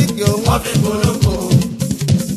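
Fuji music from a studio album track: an instrumental stretch of quick, dense hand-drum strokes with a shaker, and a short pitched phrase about half a second in.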